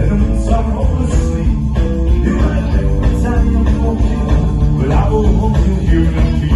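Live gypsy-ska band playing an instrumental passage, guitars and bass over a steady beat, recorded from the dancing crowd.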